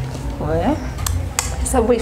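Two brief metallic clinks from a desk service bell being handled on a tabletop, about a second apart, with no full ring.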